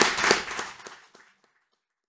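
Audience applauding with distinct hand claps, fading out about a second in.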